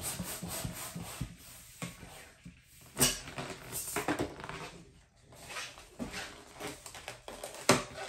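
Hand pump inflating a 350 latex twisting balloon in a series of airy strokes, leaving the last two or three finger-widths of the tip uninflated. A sharp click about three seconds in and another near the end.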